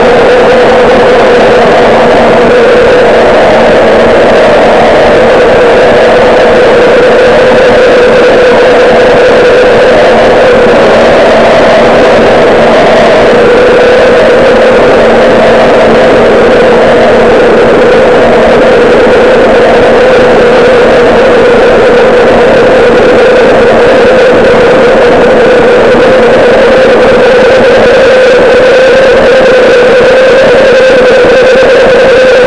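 Live noise-rock band playing, the bass guitar nearest and loudest, the sound so loud that the recording is overdriven into a constant distorted drone holding one steady pitch, with the smaller instruments buried underneath.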